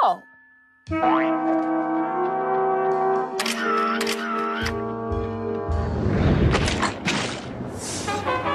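Cartoon soundtrack music with comic sound effects: a quick upward slide into sustained chords, two dipping swoops about three and a half seconds in, then a long noisy rush in the second half.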